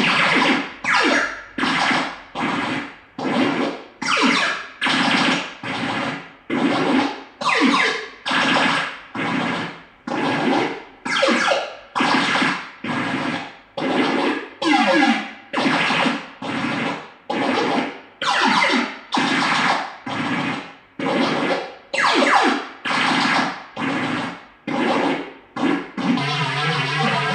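Handheld Korg pad synthesizer playing a repeating siren sound: a steady pulse of noisy, pitch-sweeping synth bursts, about one a second, each cut short and fading fast.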